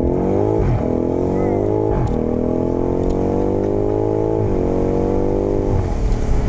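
BMW M5 Competition's 4.4-litre twin-turbo V8 heard from inside the cabin, accelerating hard through the gears. The engine note climbs three times, each climb cut by a quick drop in pitch as the eight-speed automatic shifts up, just under a second in, at about two seconds and about four and a half seconds in, then it holds roughly steady.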